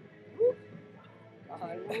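A single short, loud yelp about half a second in, then people laughing and calling 'whoa' near the end, with faint music underneath.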